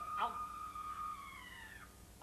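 A woman's long, high-pitched wailing cry held on one note, sliding down and fading out near the end.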